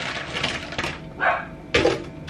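Frozen cherries tipped from a plastic bag into a blender jar, rattling in onto the ice and frozen fruit already inside. There are two short louder knocks in the second half.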